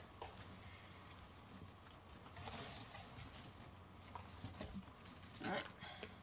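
Faint rustling and light crackling of dry NZ flax (Phormium tenax) strips being handled and woven by hand, with scattered soft clicks and a brief spell of louder rustle about two and a half seconds in.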